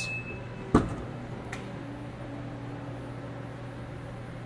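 2023 Mazda CX-50 power liftgate opening: a short high beep at the start, a sharp latch click about a second in, then a faint steady motor hum as the gate rises.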